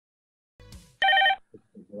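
One short burst of telephone ringing, lasting under half a second, a little after the middle, after a faint lead-in sound; a voice starts near the end.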